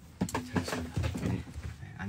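Indistinct voices talking and exclaiming, with one drawn-out vocal sound early on.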